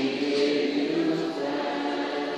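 A congregation singing a thanksgiving worship song together, many voices holding long notes.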